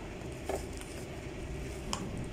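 Light handling noise as a plastic toy gel blaster is lifted out of its box among bubble wrap, with two soft knocks, one about half a second in and one near the end.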